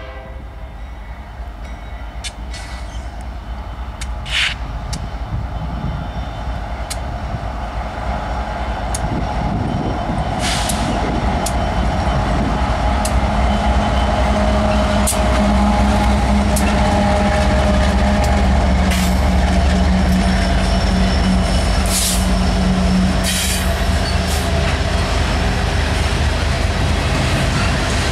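A Ferromex diesel freight train approaches and passes close by. The locomotives' engines run with a steady drone that grows louder to a peak about halfway through, then the freight cars roll past with sharp clicks and squeals from the wheels on the rails.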